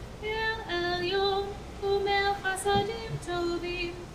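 A woman cantor singing a slow liturgical melody solo, holding each note and stepping from pitch to pitch with short breaths between phrases.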